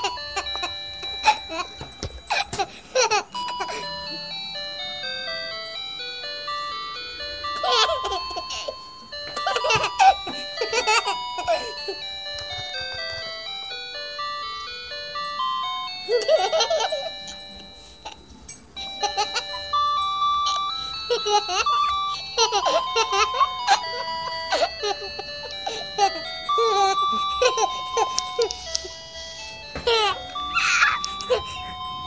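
A simple electronic jingle of plain beeping notes, in the manner of an ice-cream-van tune, plays throughout. Short bursts of a baby's or small child's laughing and babbling voice come in several times over it.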